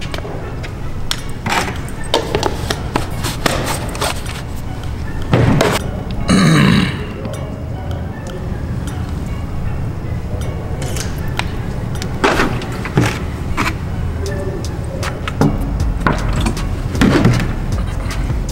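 Plastic supplement tub, scoop and shaker bottle being handled, giving scattered short clicks and knocks over background music. A short voice-like burst comes about six and a half seconds in.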